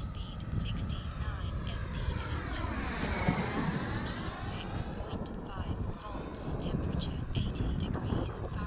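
Twin electric ducted fans of a large scale RC F-18 jet passing by: a high fan whine that swells to its loudest about three seconds in, sweeping in pitch as it goes past, then fades away. Wind rumbles on the microphone underneath.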